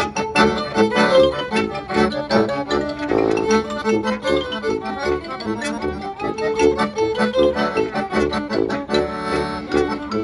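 A klezmer band playing a tune with the accordion to the fore, joined by violin, clarinet, marimba, sousaphone and bass drum.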